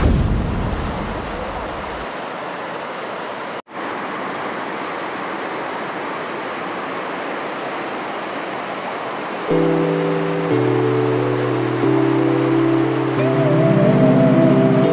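Steady rush of water cascading over rock into a pool, cut off for an instant a few seconds in. About two-thirds through, background music of held chords comes in over the water.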